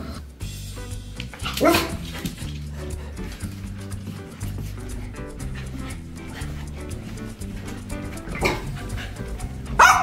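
Small white dog barking: one bark about two seconds in, then several barks near the end, over background music.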